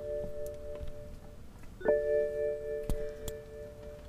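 BMW E60 5 Series dashboard warning chime sounding as the ignition is switched on without the engine running. The first gong is already ringing and fades out about a second and a half in; a second identical gong sounds a little under two seconds in and holds as several steady tones. A light click comes about three seconds in.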